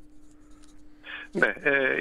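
A brief pause with a faint steady hum and a few faint scratchy ticks, then about a second and a half in a man says 'Ναι' over a telephone line, his voice thin and cut off in the highs.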